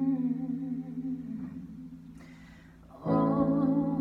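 Digital piano chords under a woman's voice holding sung notes with vibrato. The first chord and note fade away over about three seconds, then a louder chord and sung note come in near the end.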